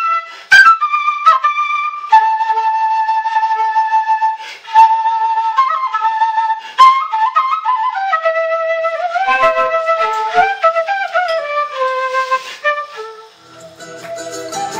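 Solo bamboo kena (Andean notched end-blown flute) playing a slow melody. It holds long notes at first, then plays a falling run of notes in the second half and fades out near the end.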